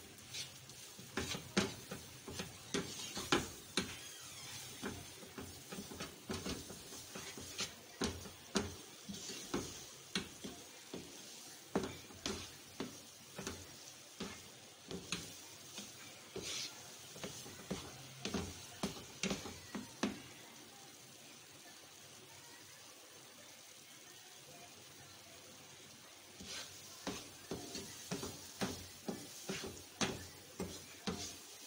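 Wooden spatula stirring and scraping a thick coconut-and-sugar mixture around a non-stick frying pan, a quick run of short scrapes and knocks against the pan over a faint sizzle, as the mixture is cooked down after the sugar has thinned it. The strokes stop for several seconds about two-thirds of the way through, then start again near the end.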